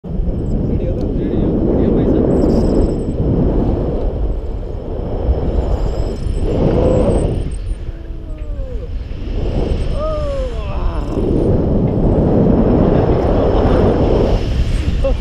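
Wind buffeting the action camera's microphone in flight under a paraglider, a heavy low rumble that swells and eases in gusts. Around the middle a few short sliding vocal cries rise above the wind.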